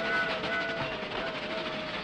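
Cartoon sound effect of the trolley car rattling along the rails: a dense, steady clatter with a wavering held tone over it.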